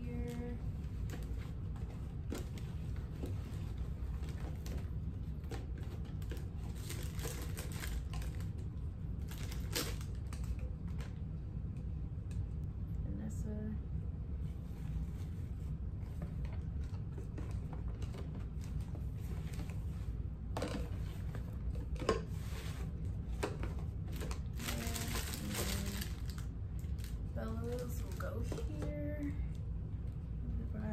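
Rustling of plastic bags and packaging, with scattered clicks and taps as small items are handled and packed into gift boxes, over a steady low room hum.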